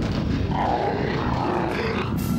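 Cartoon earthquake sound effect: a dense, steady low rumble as the ground shakes and metal fences collapse.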